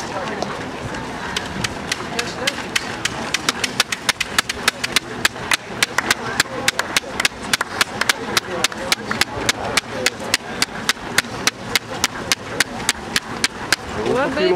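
Hand claps close to the microphone: a quick, steady run of about four or five sharp claps a second, starting about a second in and growing louder after about four seconds. Behind them is a murmur of onlookers' voices.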